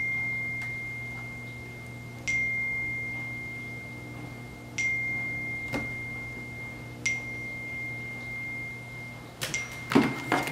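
A single high, pure chime-like tone struck about every two and a half seconds, each strike ringing out and fading slowly, over a steady low hum. Near the end come a few sharp knocks, as headphones are handled on a wooden table.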